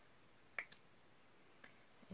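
Near silence, broken by a single short, sharp click about half a second in and a much fainter tick later.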